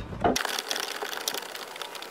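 Hand ratchet clicking rapidly as it tightens a center-console mounting bolt, starting about half a second in.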